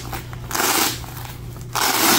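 Cordura nylon and hook-and-loop fastener rasping as a chest rig is pulled up and peeled off the front of a plate carrier. There are two short bursts, one just after the start and one at the end, with quieter fabric rustling between.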